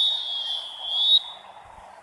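A referee's whistle: one high, steady blast of a little over a second, loudest just before it cuts off.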